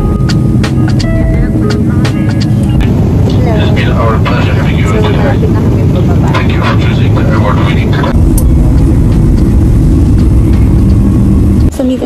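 Airliner cabin noise in flight: a loud, steady low rumble, with voices talking over it for a few seconds in the middle. The rumble changes character at about eight seconds.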